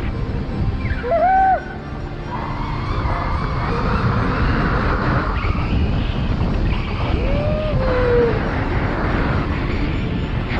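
Air rushing over the camera microphone during a tandem parachute descent, with two short hooting cries that rise and fall in pitch, about a second in and again near the eight-second mark.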